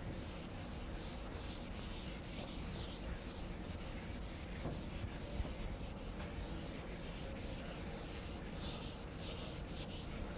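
Chalkboard eraser rubbing across a chalkboard in repeated strokes, wiping off chalk.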